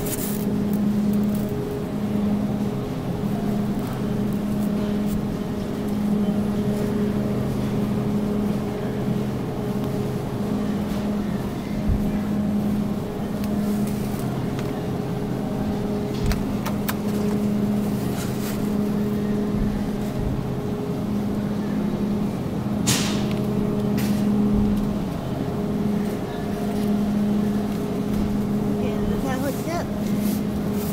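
Steady low hum of a refrigerated supermarket meat display case, with a few sharp clicks from plastic-wrapped trays of ground meat being handled.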